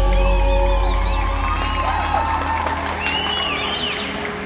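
A winter drumline's low sustained chord rings and slowly fades while audience members whoop and cheer.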